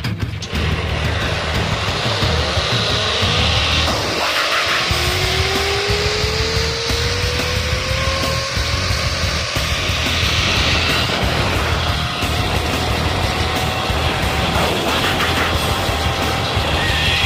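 Zip-line trolley rolling along the steel cable, its pulley whine rising slowly in pitch as the rider picks up speed, over rushing wind noise on the microphone.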